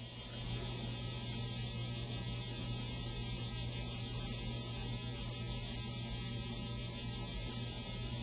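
A steady low electrical hum with background hiss that does not change, getting slightly louder about half a second in.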